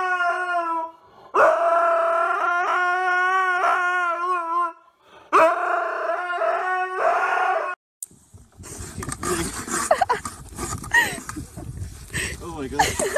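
A husky howling: three long howls, the first falling in pitch, the second wavering up and down, the third steadier. The howls stop about two-thirds of the way in, and after a brief silence a steady rushing noise takes over.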